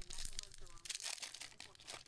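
Foil wrapper of a 2019-20 Panini Mosaic basketball card pack being torn open and crumpled by hand, a run of crinkling crackles, loudest about a second in.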